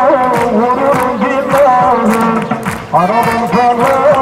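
Lively Turkish dance music: a wavering, ornamented melody over a steady drum beat.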